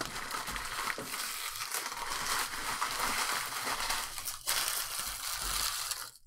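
Foil booster-pack wrappers crinkling and crumpling as they are handled, a steady rustle with a brief pause about four seconds in.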